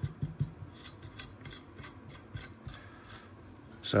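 Steel nuts being turned by hand on a threaded steel shaft: a run of light metallic clicks and rubbing, thickest in the first second and a half and thinning out after about two seconds.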